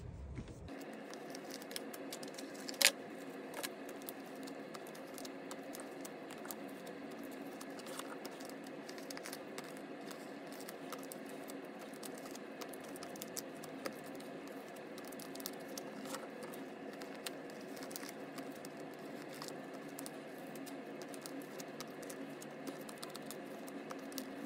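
Photocards being handled and slid into clear plastic binder sleeves: a steady run of light clicks, taps and rustles, with one sharper tap about three seconds in, over a faint steady hum.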